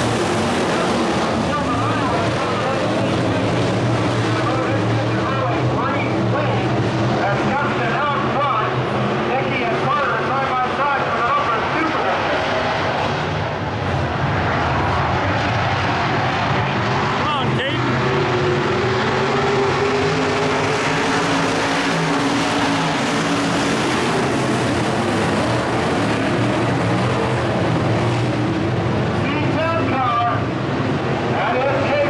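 IMCA Modified dirt-track race cars' V8 engines running together, a steady engine drone with one engine rising in pitch about two-thirds of the way through, over nearby spectators talking.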